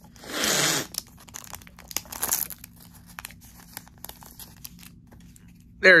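A trading-card booster pack wrapper torn open in one rip of under a second, then a shorter crinkle of the wrapper about two seconds in and light clicks as the cards are handled.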